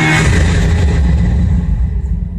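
Film trailer sound design: a deep, steady low rumble, opened by a brief hiss that thins out within the first half-second.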